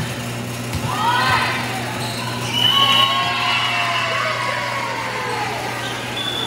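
Volleyball game sounds echoing in a gym: a few sharp knocks of the ball about a second in, and high squeaks from sneakers on the hardwood court over a steady low hum.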